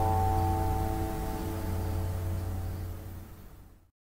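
Electric guitar's final chord ringing out and slowly fading over a low steady hum, then cut off just before the end.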